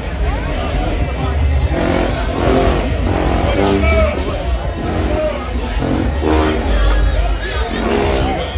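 Marching band with sousaphones sounding short held notes in a series of bursts, amid crowd chatter, over a steady low rumble.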